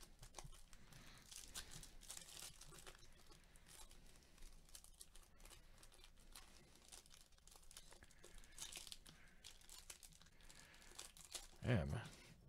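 Clear plastic wrapper around a stack of baseball cards being torn and peeled off by gloved hands: faint, scattered crinkling and tearing.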